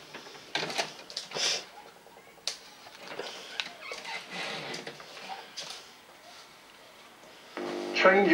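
DVD/VHS combo deck's tape mechanism loading a freshly inserted VHS cassette and starting playback: a quiet series of scattered clicks and short mechanical whirs. Near the end the tape's own soundtrack, a man speaking, comes in through the TV.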